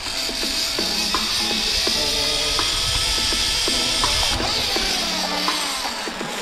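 Zip line trolley pulleys running along the steel cable, a steady high whir that drops away about four seconds in as the rider slows into the landing platform. Background music plays throughout.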